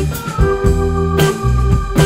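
Live band playing an instrumental passage: held organ-sounding keyboard chords over electric bass, electric guitar and drums, with sharp drum and cymbal hits.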